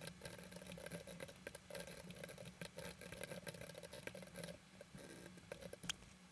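Quick, faint clicking of computer keyboard keys as code is typed, over a faint steady hum.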